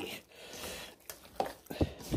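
Raw chicken pieces being kneaded by hand through egg-and-milk batter in a stainless steel bowl: wet squishing, with a few short knocks against the bowl in the second half.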